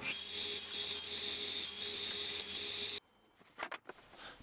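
Table saw running and crosscutting wood strips on a sled: a steady whine and hiss with a few brief louder hisses, cutting off suddenly about three seconds in, followed by a few faint knocks.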